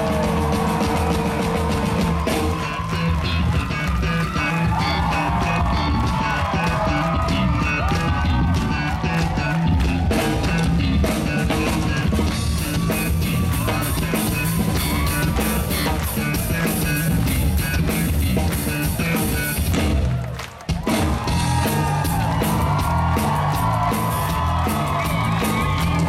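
Live ska-rock band playing loud through a concert PA, drums and electric bass heavy in the low end. The music cuts out abruptly for a moment about twenty seconds in, then kicks back in.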